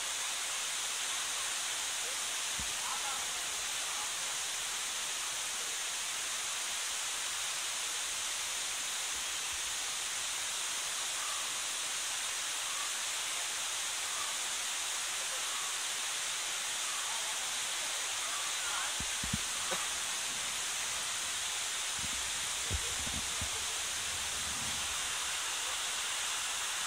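Waterfall and rocky cascade rushing steadily, an even hiss that does not change, with faint distant voices.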